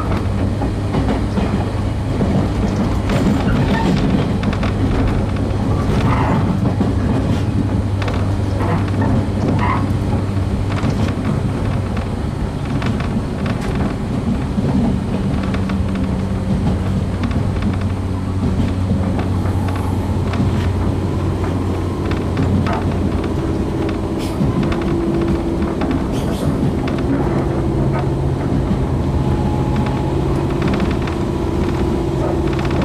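Running noise inside a JR 115-series electric train's motor car at speed: a steady rumble of wheels on rail, with scattered clicks over the rail joints and a constant low traction-motor hum. About two-thirds in, the hum shifts to a higher tone.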